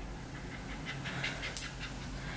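Pomeranian puppy panting with quick, faint breaths through its open mouth, with one short louder hiss about one and a half seconds in. It breathes through its mouth because its nose is blocked by a cold.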